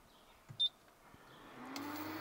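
Induction hob's touch control gives a single short electronic beep as it is switched on. Near the end its cooling fan starts with a whir and a low hum that rises slightly in pitch.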